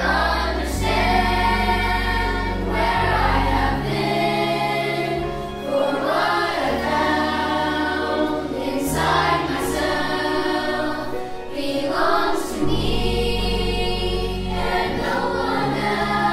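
Children's choir singing in unison and harmony, carried over sustained low accompaniment notes that change every few seconds.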